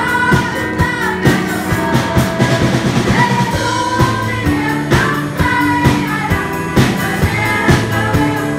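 A group of women singing a Vietnamese Protestant hymn together through microphones, backed by a live band whose drum kit keeps a steady beat.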